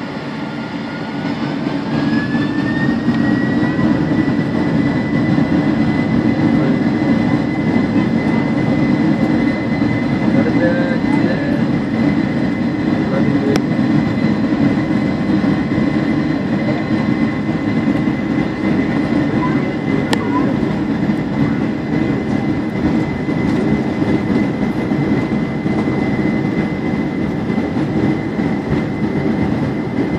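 Boeing 747 jet engines spooling up to takeoff thrust, heard inside the cabin during the takeoff roll. A whine rises in pitch over the first few seconds and then holds steady over a loud, constant engine rumble.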